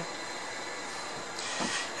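Steady background hiss with a faint, steady high-pitched whine running under it, and a brief hissy swell near the end.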